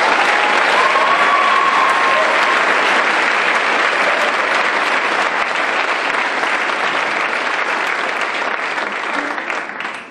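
Audience applauding steadily after a speech, with a short cheer rising above it about a second in; the applause dies away near the end.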